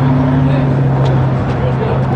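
A motor vehicle's engine running steadily on the street as a low hum, its pitch dropping slightly partway through, with people's voices faintly in the background.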